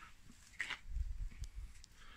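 Faint movement and handling noise of a man bending down: a few soft low bumps and light clicks, with no grunt or voice.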